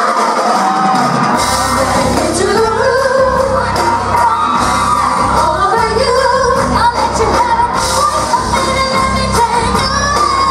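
Live pop band with female voices singing through a PA in a large hall; the bass and drums come in about a second in and carry a steady beat.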